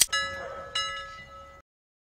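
Subscribe-button sound effect: a click at the start, then a bell chime struck twice, about three-quarters of a second apart. It rings on and cuts off suddenly a little past halfway.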